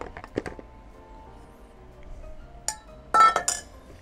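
Stainless steel bowl clinking as it is handled and set down on a stone countertop. There are a few light knocks in the first half second, and a louder, ringing metallic clink about three seconds in.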